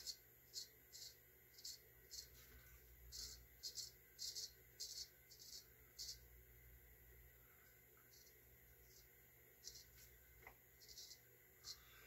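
Straight razor scraping through lathered stubble in short, quiet strokes, about two a second at first, then fewer and fainter in the second half.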